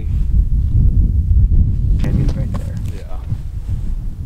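Wind buffeting the microphone, a heavy continuous low rumble, with a brief indistinct voice about two seconds in.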